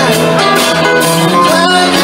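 Live band playing a rock song loudly, with guitar and a singing voice over a steady accompaniment.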